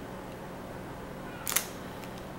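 Steady low hum of the room, then about one and a half seconds in a single short, sharp handling noise as wrapped soap samples are moved about on a table.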